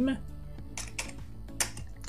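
Computer keyboard typing: several separate keystrokes in the second half as a few characters of code are entered.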